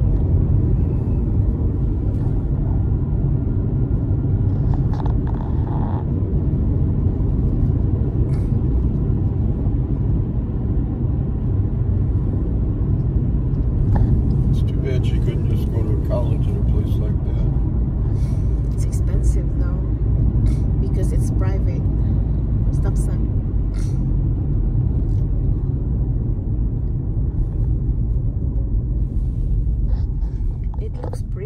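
Steady low rumble of a car driving along a road, heard from inside the cabin, with short clicks scattered through the second half.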